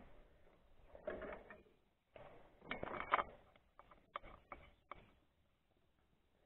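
Hand-handling noise of fitting a bolt into an outboard motor's lower unit housing: short rustling scrapes, then a run of light, sharp metal clicks, and the sound stops about a second before the end.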